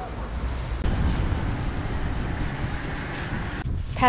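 Wind rumbling on the camera microphone under a steady rushing noise, which drops away suddenly near the end.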